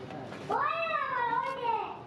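A cat meowing once: one long meow, starting about half a second in, that rises and then falls in pitch.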